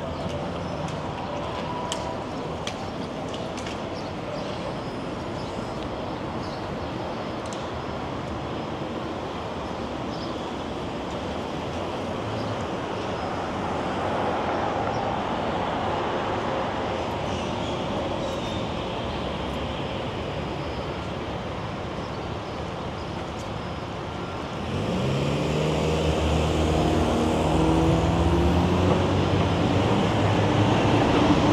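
Downtown street traffic: a steady hum of cars passing. About 25 seconds in a vehicle close by accelerates, its engine rising in pitch and becoming the loudest sound.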